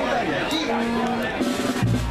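Live blues band starting up: a few held instrument notes over crowd chatter, then bass and drums come in near the end.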